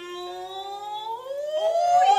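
A female gidayu chanter's voice holding one long vowel that slowly rises in pitch, then sweeps up steeply near the end.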